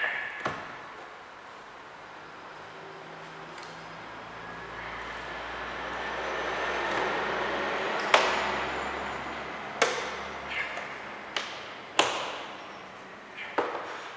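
Plastic retaining clips of a car's door trim panel snapping free as the panel is pried off with a plastic trim tool: a few sharp snaps in the second half, the first and loudest about eight seconds in. Before the first snap, a noise builds slowly over several seconds.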